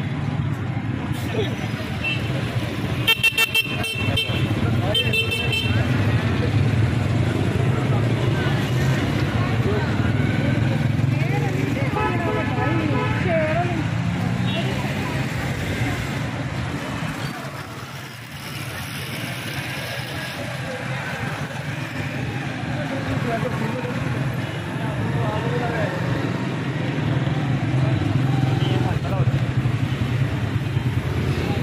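Busy street traffic: car and motorcycle engines running steadily, with a car horn honking in short toots about three to five seconds in, over the chatter of a crowd.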